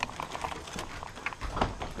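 Scattered light knocks and scuffs of footsteps and of a loose wooden door being handled at a doorway.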